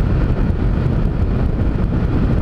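Steady wind rush on a helmet-mounted microphone over the low running of a Honda CG Titan motorcycle cruising on the highway.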